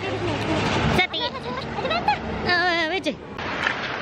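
A man's voice talking close to the microphone, with one drawn-out, wavering vocal phrase about two and a half seconds in, over steady street traffic noise; a low vehicle hum fades out in the first second.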